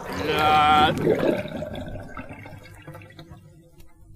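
A short pitched cartoon-voice sound in the first second, then a noisy rushing sound effect that fades away over the next three seconds.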